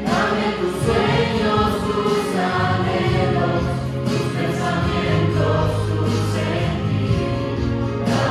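A mixed vocal group of men and women singing a Christian song together through handheld microphones, holding long notes at several pitches at once.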